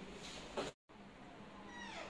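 A young macaque gives a short, high cry that falls steeply in pitch near the end. Just before the middle the sound drops out completely for an instant.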